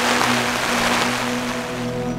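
Heavy rain on a tarp shelter, a dense steady hiss, with soft background music under it. The rain cuts off suddenly at the end.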